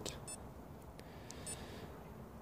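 Garmin Forerunner 235 sports watch giving two faint, short high-pitched beeps about a second apart as its side buttons are pressed, with a few faint clicks in between.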